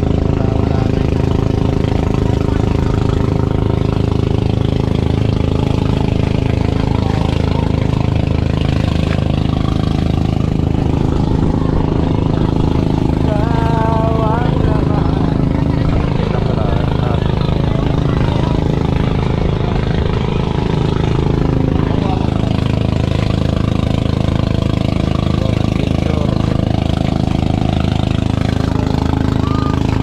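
Boat engine running steadily, a loud constant drone, as a motorized outrigger boat tows a floating cottage over open water. Indistinct voices of people aboard can be heard under it.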